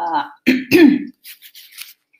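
A person clearing their throat: two short, rough voiced rasps in the first second, the second one louder, then a few faint mouth clicks.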